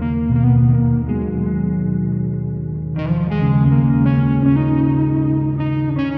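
Instrumental rock music: an electric guitar run through effects rings out held chords, with a new chord struck every second or so and a brighter one about halfway through.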